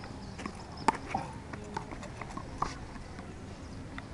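Handball rally: a quick, irregular series of sharp smacks as the small rubber ball is struck by hand and rebounds off the concrete wall and court. The loudest smack comes about a second in.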